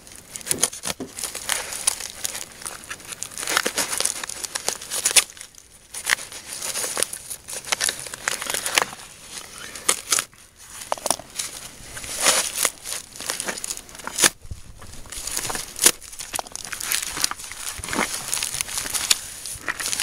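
Duct tape, nylon cover and layers of Kevlar fabric from a soft body armor insert being torn and pulled apart by hand: irregular crinkling, rustling and tearing.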